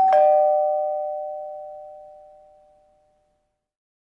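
A two-note ding-dong chime like a doorbell: a higher note, then a lower one a moment later, both ringing and fading away over about three seconds.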